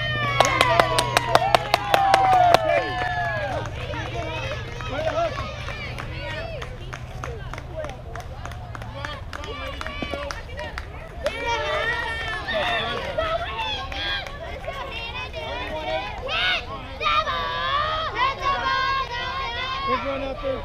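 Softball spectators cheering and clapping, a quick run of hand claps with shouts in the first few seconds, then ongoing shouting and chatter from the crowd and dugout.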